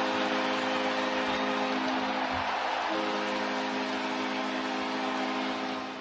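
Hockey arena goal horn sounding a steady held chord after a home goal, its upper notes dropping out for about a second near the middle, over crowd noise.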